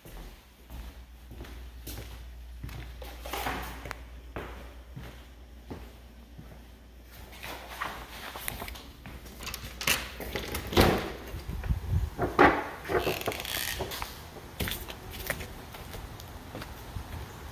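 Footsteps on a hardwood floor, then a back door being handled and opened, with a cluster of loud knocks and clatters about ten to thirteen seconds in.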